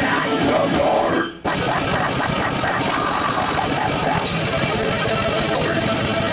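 A live rock band playing loud, chaotic heavy music with distorted guitars and drums. The sound drops out abruptly for a moment about a second in, then comes back at full level.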